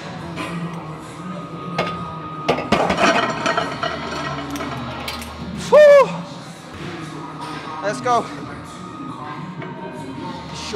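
Gym weight-machine sounds over background music: a cluster of metallic clinks and knocks from the weights a couple of seconds in. About six seconds in comes a loud, short strained vocal cry that rises and falls in pitch, with a shorter one near eight seconds.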